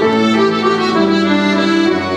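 Accordion and violin playing an instrumental passage together in held, sustained notes, with piano accompaniment, in a live acoustic trio.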